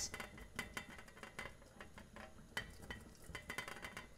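Faint, irregular clicks and clinks at a stockpot of boiling broth as shellfish go in.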